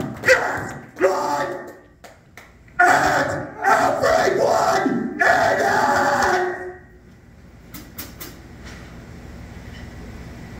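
A man's voice amplified through the club PA, shouting or growling in bursts without clear words. About seven seconds in it stops and only the low murmur of the room is left.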